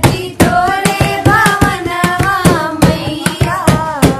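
Women's voices singing a Bhojpuri pachra, a Navratri devotional folk song, in a wavering sustained melody, with steady rhythmic hand clapping keeping the beat.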